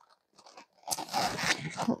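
Packaging handled by hand inside a cardboard shipping box: an irregular crunching, scraping rustle against the white styrofoam thermal box and its packing, starting just under a second in.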